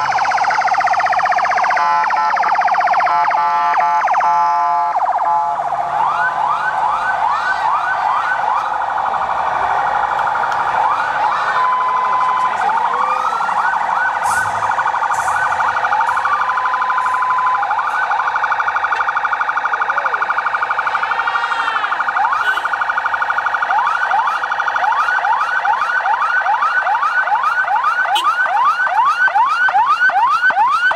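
Several vehicle sirens sounding at once, overlapping. The main one is a fast rising yelp repeated about twice a second, and slower falling wails and a few short steady tones weave in between. They come from the ambulances moving slowly in the convoy.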